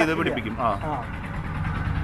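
A man speaking briefly in the first second, over a steady low hum.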